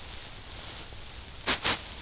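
Two short, high toots on a gundog training whistle, about a fifth of a second apart, each with a slight rise and fall in pitch, over a steady background hiss.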